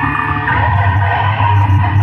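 Metal band playing live: loud distorted electric guitar over a heavy low end, with the low end getting heavier about half a second in.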